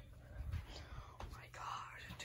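Faint whispering voices, loudest near the end, with soft low thuds underneath.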